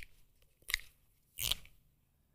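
Dry-erase marker writing on a whiteboard: three short strokes about a second apart.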